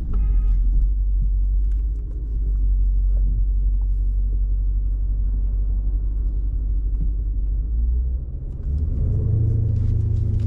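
2020 Jeep Grand Cherokee SRT's 6.4-litre HEMI V8 heard from inside the cabin, a deep steady rumble at low speed that rises in pitch and gets a little louder near the end as the Jeep accelerates.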